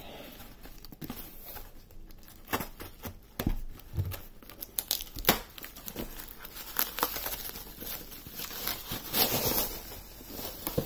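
A cardboard shipping box being opened: scissors cutting along the taped seam, then the cardboard and packing tape torn by hand in a string of short rips and clicks. A little before the end, bubble wrap crinkles as the packed contents are pulled out.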